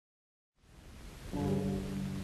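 Start of an old music recording: surface hiss fades in about half a second in, then a sustained low chord begins a little after one second.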